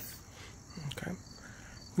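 Steady high-pitched insect chirring in the background, with a quiet spoken "okay" about a second in.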